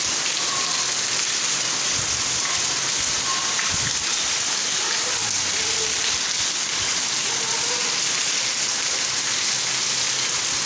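Heavy rain falling steadily onto a wet concrete lane and the surrounding roofs and puddles: a dense, even hiss that doesn't let up.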